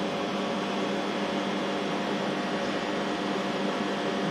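Steady machinery hum with several constant tones over a noise bed, unchanging throughout.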